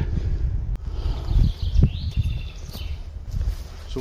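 Wind rumbling on the microphone, with a few footsteps on the forest floor and a short bird call about two seconds in.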